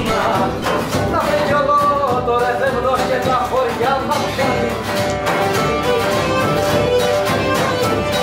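Cretan folk music: a Cretan lyra, a bowed three-string fiddle, plays a melody over a plucked accompaniment that keeps a steady beat.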